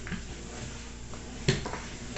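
Steady low hum of a washing machine running through a wash cycle, with one sharp knock about one and a half seconds in.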